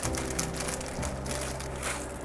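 Soft background music with the crinkling of a plastic ramen packet being shaken out over a pot.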